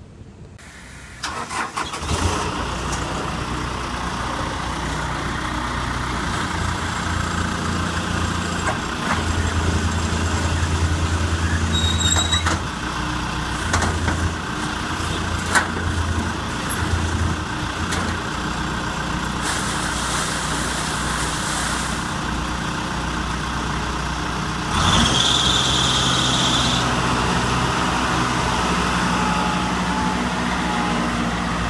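Broce RJ300 road broom's engine starting about a second in, then running steadily. About 25 seconds in it gets louder, with a high whine for a couple of seconds.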